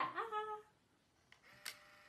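A child's short, high-pitched vocal exclamation that rises and then holds for about half a second, followed by a couple of faint clicks.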